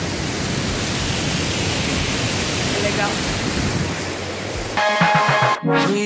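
Loud, steady rush of water pouring down an artificial waterfall close by, loud enough to drown out talk. Background music comes in near the end.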